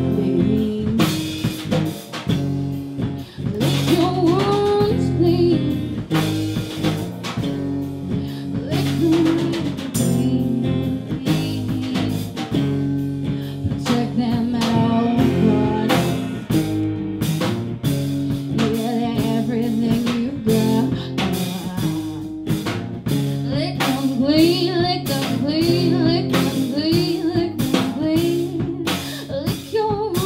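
Live band music: a strummed acoustic guitar, electric bass and drum kit playing a song at a steady beat, with a woman singing at times.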